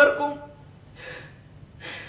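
A woman's tearful voice trails off, followed by a soft breath and then a sharp, sobbing intake of breath near the end.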